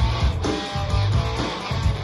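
A band playing: strummed guitar over a steady bass line, with drum hits.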